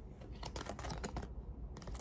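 Tarot cards being shuffled and handled, a scattered run of light clicks and flicks at uneven intervals.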